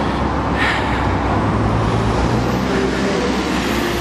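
A single-decker bus driving past close by: a steady low engine hum with a faintly rising tone in the second half, over tyre and road noise.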